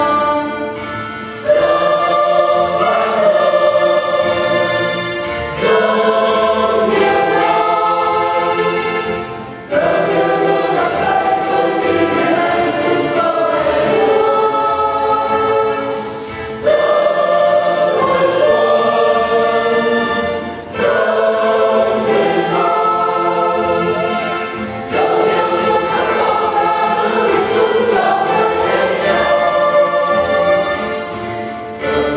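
Church choir singing a hymn in long, sustained phrases, with a short break for breath every four to five seconds.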